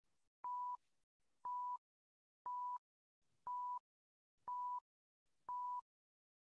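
Electronic beep tones from the audio guide of a sound-walk game: six short, faint beeps near 1 kHz, evenly spaced one per second.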